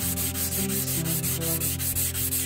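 An amboyna burl wood blank rubbed briskly back and forth by hand on sandpaper laid flat, its end being sanded: a rapid, even rasping scrape of wood on abrasive paper, several strokes a second.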